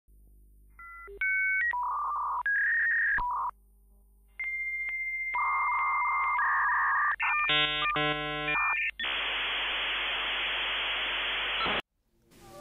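Dial-up modem connecting: a few paired touch-tone dialing beeps, a long steady high tone, a burst of warbling handshake tones, then about three seconds of hissing static that cuts off abruptly just before the end.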